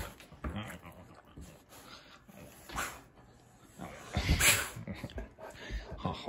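A yellow Labrador retriever making soft sounds as its chin is scratched, with a short burst near three seconds and a louder noisy burst about four and a half seconds in.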